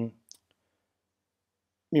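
A man's voice holding one steady, drawn-out sound that stops just after the start, followed by a faint click, then near silence until he speaks again at the very end.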